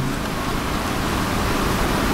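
A steady, even hiss of background noise from the room and microphone, with no speech.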